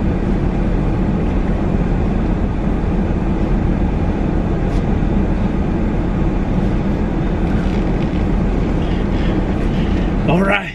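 Steady, loud low rumble inside a parked minivan's cabin, its engine left running to keep the heat on in the cold.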